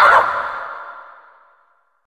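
A short warbling cry that fades away in a long echo, dying out to silence about a second and a half in.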